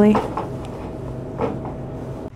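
A woman's word trails off at the start. Then there is low shop background with a faint steady hum and a couple of soft clunks, about half a second and a second and a half in.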